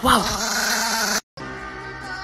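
A chihuahua growling with teeth bared for about a second, ending abruptly at a cut, after which steady background music plays.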